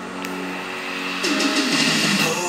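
Pop dance-song music: a held synth chord, then, a little past halfway, a louder swoop that falls in pitch.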